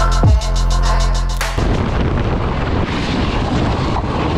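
Electronic music with a heavy bass and a falling bass sweep, cutting off abruptly about a second and a half in. It is replaced by loud, rough onboard noise from a racing kart on track, its engine mixed with wind buffeting the camera.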